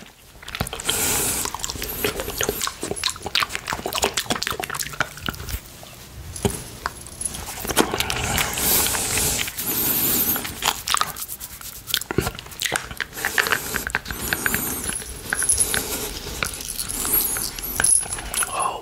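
Close-miked wet mouth sounds of licking and sucking a hard candy cane, a dense run of smacks and sticky clicks.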